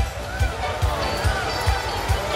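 Live Christian praise-and-worship music: a kick drum keeps a steady beat of about two and a half beats a second, with voices over it.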